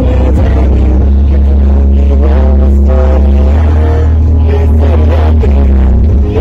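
Loud concert music through PA speakers, with heavy sustained bass and singing over it, heard from inside the crowd.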